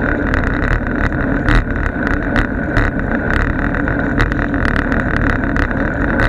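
Steady wind and road noise while riding, rushing over the microphone, with frequent short sharp clicks and knocks from rattling or bumps.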